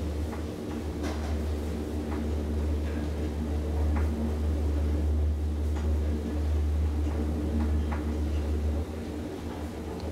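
KONE traction elevator car descending, heard from inside the cab as a steady low rumble of travel with a few faint clicks. The rumble falls away sharply near the end as the car nears the bottom floors.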